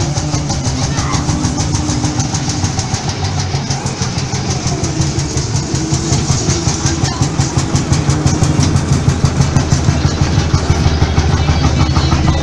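Vintage Société Française Vierzon tractor engine, a single-cylinder semi-diesel, running at low revs as it pulls a parade float past close by. It gives an even, rapid thudding beat of about five strokes a second that grows louder as it draws near.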